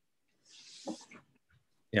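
A man's short breath in, a soft hiss ending in a brief throat sound, just before he says "yeah".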